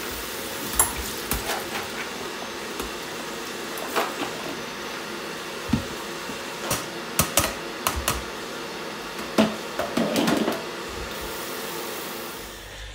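Kitchen tap water running steadily into the sink as bean sprouts are rinsed in a plastic colander, with scattered clinks and knocks of dishes and utensils.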